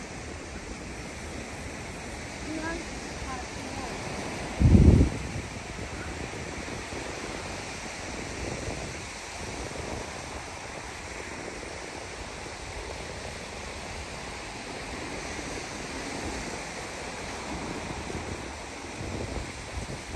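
Steady outdoor wash of small sea waves and wind on a beach. About five seconds in there is one brief, loud, low thump.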